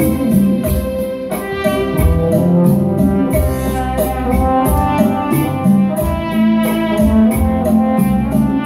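Instrumental interlude of a song played on an electronic keyboard: a sustained melody over a steady programmed beat, with no singing.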